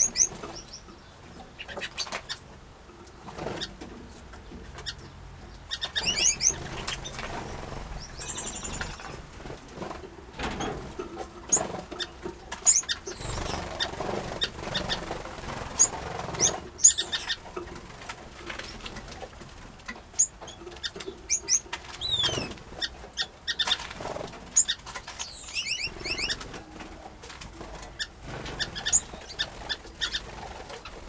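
Small aviary finches calling: scattered short, high chirps and a few falling whistled notes, with wing flutters and sharp little clicks of birds landing and moving about the wooden nest boxes.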